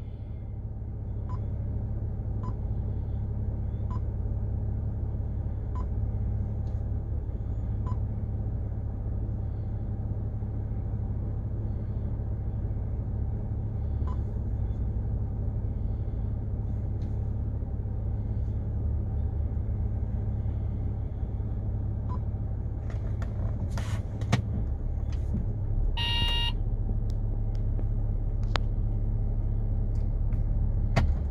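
Steady low rumble of a car idling, heard from inside the cabin, with faint clicks as a touchscreen head unit is tapped. A short electronic beep sounds a few seconds before the end, just after a quick cluster of sharper clicks.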